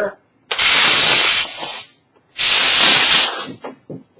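Compressed-air blow gun fired in two blasts of hiss, each about a second long, into the seam between a cured Ultracal mold half and its plug to pop the mold half free.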